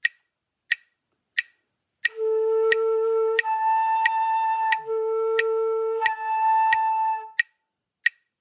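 Metronome ticking steadily at about one and a half beats a second. About two seconds in, a flute enters and slurs four half notes, alternating a low note with the octave above it, two beats each and without tonguing between them: an octave (register) slur drill.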